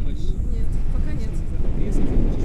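Airflow buffeting the camera microphone during a tandem paraglider flight: a loud, steady low rumble of wind noise.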